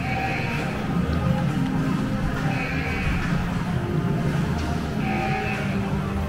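Music playing over the ride queue hall's sound system, with a high pulsing sound that comes back about every two and a half seconds over a steady low bed.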